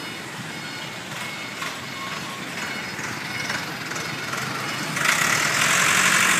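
City street traffic: a steady wash of passing cars and motorbikes. About five seconds in it grows louder with a rushing hiss as a vehicle passes close by.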